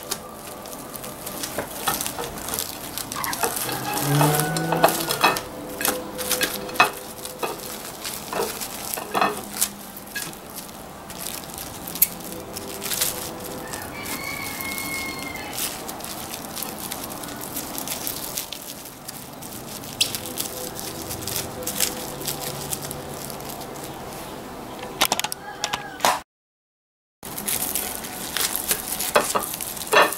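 Plastic wrap and banana leaves crinkling and rustling in quick irregular crackles as a meat roll is wrapped and squeezed tight by hand. The sound drops out completely for about a second near the end.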